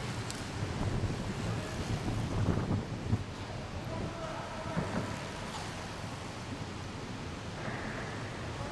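Indoor velodrome ambience: a steady hall rumble with cyclists' track bikes passing on the wooden boards, and faint voices in the distance.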